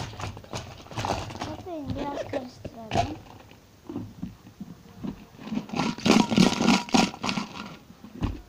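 Close handling noise: objects rustled and knocked right at the phone's microphone, densest and loudest about six to seven seconds in.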